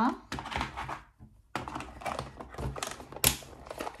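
Small clear plastic storage box being handled, with coins and paper shifting inside in a run of quick clicks and rattles. The lid shuts with a sharp plastic click about three seconds in.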